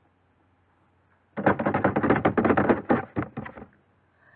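A quick run of rapid clicking taps, about two seconds long, starting a little over a second in.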